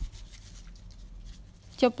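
Sesame seeds shaken from a small glass, pattering faintly and irregularly onto salad on a plate, with a light click at the start.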